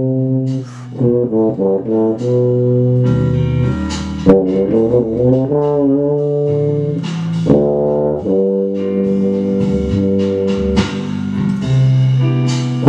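Tuba playing a jazz melody: long held notes broken by quick runs of short notes.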